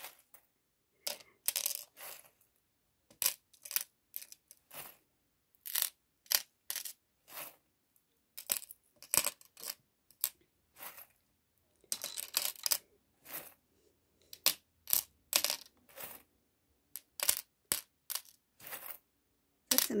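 Small metal charms clinking and jingling on a mirrored tray as a hand spreads and drops them. The clinks come in irregular clusters of sharp ticks with short pauses between.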